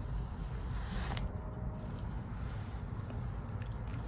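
Quiet room tone: a steady low hum with faint handling noise and one faint click about a second in.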